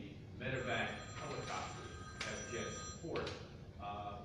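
A steady electronic ringing tone, several high pitches sounding together, begins about half a second in and stops after roughly two and a half seconds, over indistinct talk in the room.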